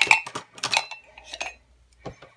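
Coloring tools (gel pens, pencils, a brush and an electric eraser) knocking and clinking against each other and a cutting mat as they are tipped out of a mug and laid down. There are a few quick clatters at the start, another about two-thirds of a second in and one more near a second and a half.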